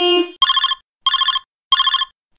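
Electronic countdown bleeps from a subscribe-button animation. A lower tone ends a little under half a second in, then three short, higher bleeps with a fast warble come about two-thirds of a second apart.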